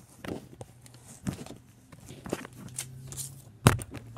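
Handling noise from a hand rummaging for and picking up a paper card: a series of short knocks, taps and rustles, with one loud thump near the end.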